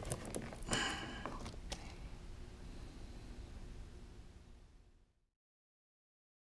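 Faint clicks and rustling of a trailer-wiring harness and plastic connector being handled, fading out and cutting to silence about five seconds in.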